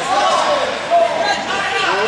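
Several people talking at once indistinctly in a gym hall, with one short knock about a second in.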